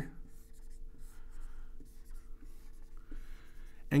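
Dry-erase marker drawing on a whiteboard: a run of faint marker strokes.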